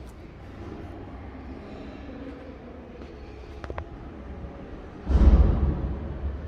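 Low steady hum of a passenger lift travelling up its shaft after being called, with a couple of faint clicks about midway. Near the end a loud low thump comes with a spoken 'yeah'.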